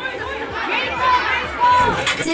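Crowd of young children chattering, many high-pitched voices overlapping, with a couple of short calls standing out about a second in and near the end.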